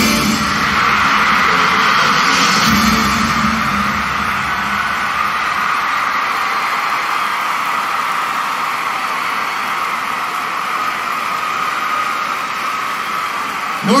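The show's music ends in the first few seconds, then a large arena crowd cheers and applauds steadily, slowly growing quieter.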